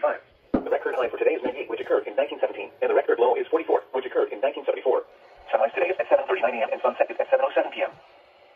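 NOAA Weather Radio broadcast voice reading the weather report, heard through a weather radio's small speaker, thin and narrow in tone. There is a short click about half a second in and a brief pause about five seconds in.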